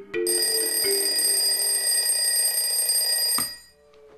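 Bedside alarm clock bell ringing loudly and steadily, then cut off abruptly with a click about three and a half seconds in, as someone switches it off.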